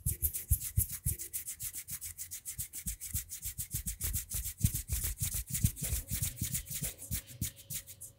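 Skin-on-skin rubbing of hands held close to a microphone, in rapid strokes about seven a second that stop suddenly at the end.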